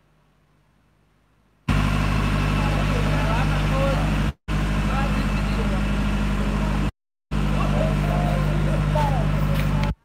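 Near silence, then an engine hum cuts in suddenly and runs steadily, with people's voices over it; the sound drops out completely twice for a moment.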